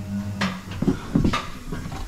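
Electronic wheel balancing machine with a motorcycle wheel on it, its steady low hum stopping well under a second in as the balancing spin ends, followed by two sharp clicks.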